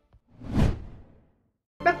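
A single whoosh transition sound effect that swells up and fades away within about a second.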